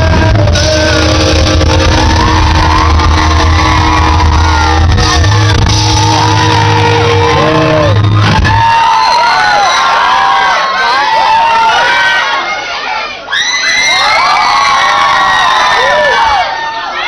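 Live rock band holding a final chord, bass and guitars ringing under the crowd's cheering and whoops. The band cuts off about eight and a half seconds in, and the crowd keeps cheering and whooping.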